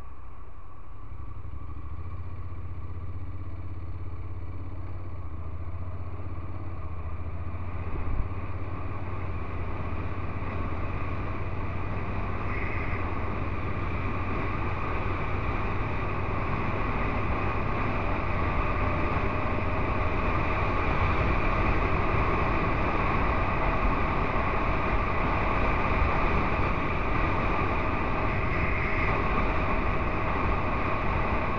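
Honda NC750X's parallel-twin engine running as the motorcycle pulls away and gathers speed, with a rushing road noise that builds steadily as it goes faster. A brief thump about eight seconds in.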